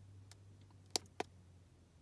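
Two short, sharp clicks about a quarter second apart, a second in, with a fainter tick before them: the scroll button of a handheld OBD2 scan tool being pressed to step through its monitor readings.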